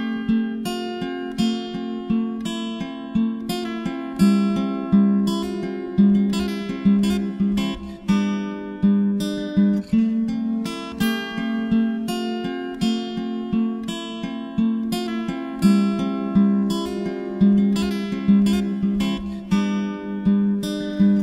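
Acoustic guitar picking and strumming chords in a steady rhythm, each note ringing and fading.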